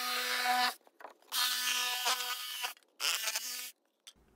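A DeWalt 20V cordless jigsaw with a wood blade cutting through 1-inch XPS foam insulation board, its motor giving a steady hum with a hissing cut. It runs in three stretches, stopping briefly about a second in and again near three seconds.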